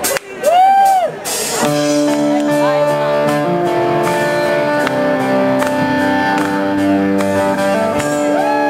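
Opening of a rock song played live: sustained chords with electric guitar ring out steadily from about a second and a half in. Just before the chords, a short note rises and falls in pitch.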